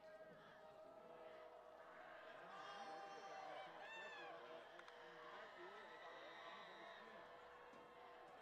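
Near silence with faint, distant crowd voices and occasional calls from the stands and field.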